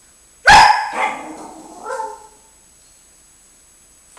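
A Siberian husky lets out a sudden, very loud bark about half a second in, then two shorter, fading grumbling calls about one and two seconds in.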